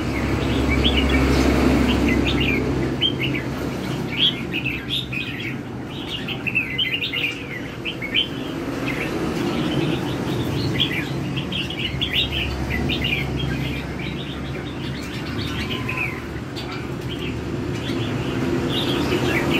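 Red-whiskered bulbuls in cages facing each other, singing back and forth in rapid, chattering phrases that never let up, the fast 'chainsaw' song style bulbul keepers prize. A low rumble runs underneath, louder in the first few seconds.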